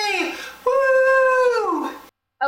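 A man's voice in high falsetto holding two long, loud wordless notes, each sliding down in pitch as it ends: a mock howl or sung note rather than speech.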